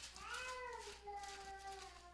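A cat meowing: one faint, drawn-out meow of about two seconds that rises a little and then slowly falls in pitch.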